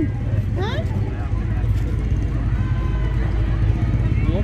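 Steady low rumble of a slow-moving pickup truck's engine under scattered chatter from the parade crowd.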